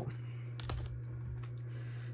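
A few faint plastic clicks from CD jewel cases being handled and swapped, over a steady low hum.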